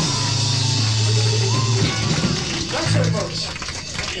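Live rock band playing loudly: a long low note held for about two seconds, then a second shorter one about three seconds in, over a busy wash of sound.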